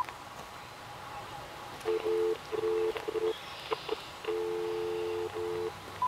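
Uniden DCX150 DECT 6.0 cordless handset at the edge of its range: a steady two-tone telephone signal comes through the handset in broken, irregular stretches, cutting in and out as the link to the base drops. A short key beep sounds at the very start.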